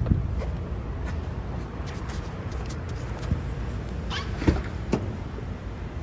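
Low, steady rumble of handling noise from a handheld camera being carried, with a few sharp knocks between about four and five seconds in.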